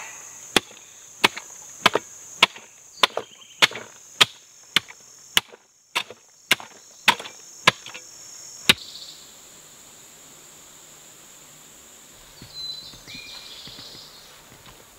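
A short-handled hand mattock chopping into packed dirt, about fourteen sharp strikes at roughly two a second, stopping about two-thirds of the way through. Insects buzz steadily at a high pitch behind the strikes.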